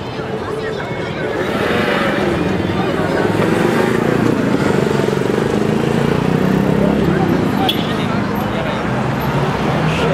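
Street crowd chatter with a motor vehicle engine running underneath, swelling over the first few seconds and easing off a little toward the end.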